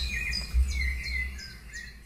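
Birds chirping and calling over a low rumble, fading away toward the end.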